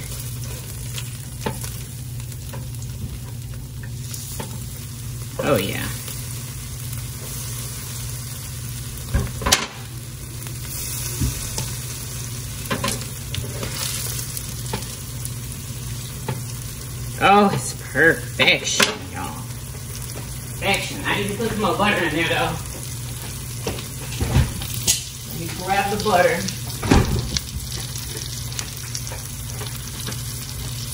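Patties and buttered bun halves sizzling steadily in a frying pan. A metal spatula scrapes and knocks against the pan now and then as the sandwiches are flipped, with the busiest scraping in the second half.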